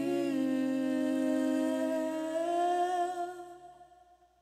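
Two voices, male and female, hold the song's final note in harmony over a steady low sustained chord, then fade out near the end.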